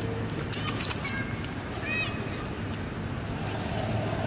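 Infant long-tailed macaques calling: a quick run of sharp, high squeaks about half a second in, then one short arching chirp about two seconds in, over a steady low hum.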